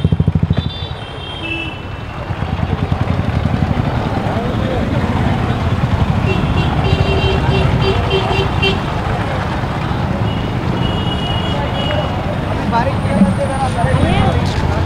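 Busy street-market ambience: motorcycle engines running close by and passing traffic, with a hubbub of voices. Short, high horn toots sound about halfway through and again a few seconds later.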